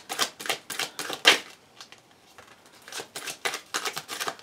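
A deck of tarot cards being handled: shuffled in the hands and dealt onto a cloth-covered table, making quick runs of sharp card clicks. The clicks ease off about halfway through, then pick up again near the end.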